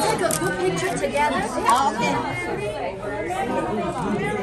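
Group of diners around a restaurant table talking over one another: overlapping conversation and chatter, with no single clear voice.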